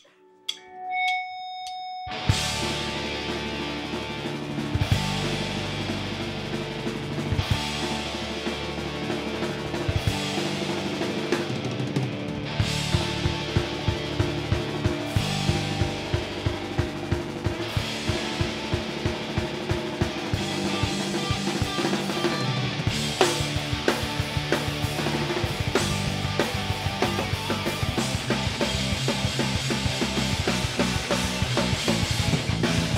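Live rock band starting a song: a few quiet held notes, then drums, electric guitar and bass guitar come in together about two seconds in and play on with a steady driving beat.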